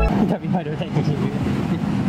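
Pentax Espio 738 point-and-shoot film camera's motor whirring as it automatically rewinds the film after the last of its 36 exposures, with street traffic and voices around it.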